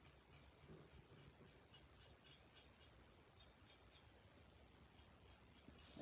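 Faint, quick scratching strokes of a nearly dry paintbrush dry-brushing a ceramic piece, about four strokes a second, over near silence.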